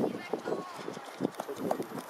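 Children's voices calling out across a youth football pitch, over quick, irregular thuds of running footsteps on artificial turf.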